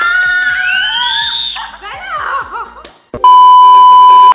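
Excited rising exclamations from the people at the table. About three seconds in comes a loud, steady one-kilohertz test-tone beep, the television colour-bars bleep, which lasts about a second.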